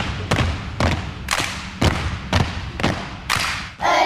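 A loud, steady beat of thumps, about two a second, each with a short ringing tail.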